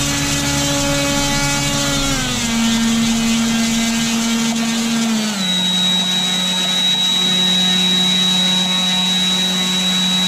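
Small hand-held motor spinning a propeller in open air, a steady humming drone. Its pitch steps down about two seconds in and again about five seconds in, when a thin high whine joins it.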